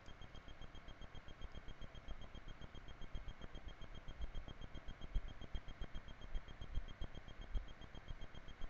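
Quiet room with faint, irregular low bumps and rustles from a smartphone being handled close to the microphone, over a faint pulsing high electronic tone.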